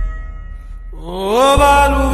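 Slowed, reverb-heavy Telugu film song: the accompaniment thins out briefly, then about a second in a sung voice slides upward into a long held note as the bass returns.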